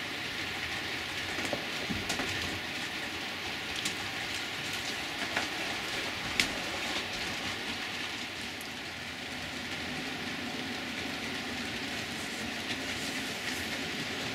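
Model railway goods train running on the track: a steady rolling hiss of wheels on rail with occasional light clicks, as a long rake of goods vans passes close by.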